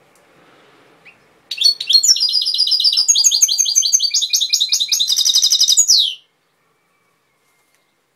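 European goldfinch singing a fast, continuous run of high twittering notes. The song starts about a second and a half in and ends after about five seconds with a falling note.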